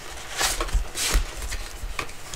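Cardboard packaging scraping and rubbing as an inner box is slid out of its outer retail box, with brief scuffs about half a second and a second in.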